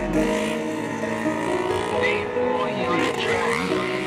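Dirt bike engines revving, pitch falling and rising again around the middle, with voices in the background.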